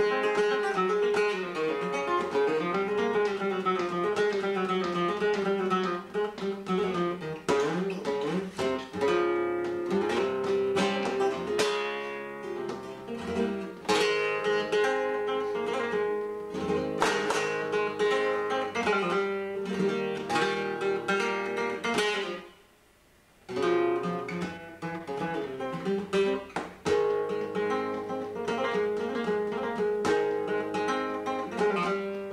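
Solo flamenco guitar playing bulería: picked melodic runs broken up by sharp strummed chords, with a break of about a second some three-quarters of the way through.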